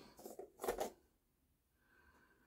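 A plastic shave-soap tub being handled and its lid taken off: two short scuffs in the first second, then quiet.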